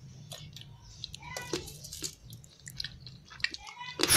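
A person chewing crunchy oven-roasted chickpeas: a run of irregular, faint crunches.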